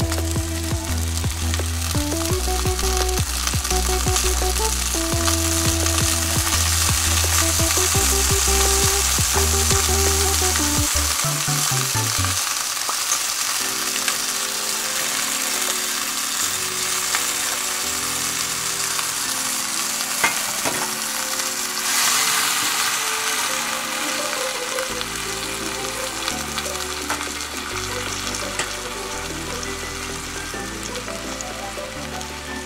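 Shrimp sizzling in hot oil in a frying pan as they are added, dropped in by hand and then poured in from a plate. The sizzle flares up briefly about two-thirds of the way through. Background music plays over it.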